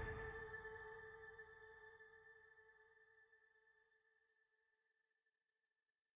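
Closing music ending on a held chord that fades away, dying out to silence about four seconds in.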